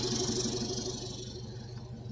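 Chevrolet Colorado ZR2 pickup's engine idling steadily, with a faint hiss that fades away in the first second or so.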